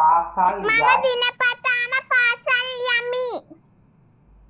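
A child singing a short line of evenly paced, held notes, the last one drawn out and ending about three and a half seconds in. It follows a moment of the child speaking.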